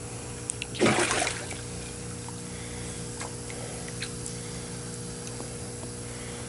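Water splashing and trickling in a fish tank as the siphoning of a water exchange is stopped, with one louder splash about a second in, over a steady low machine hum.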